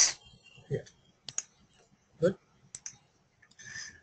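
A few sharp, isolated clicks of a computer mouse as a document is scrolled, spread out with gaps between them.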